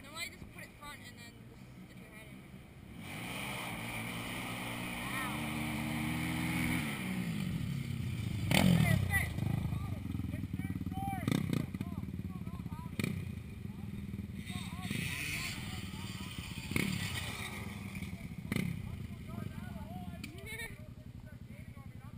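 Small off-road engines running, one revving up so its pitch climbs between about 4 and 7 seconds in, then a run of sharp knocks every couple of seconds.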